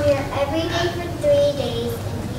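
Children singing a slow melody, with long held notes.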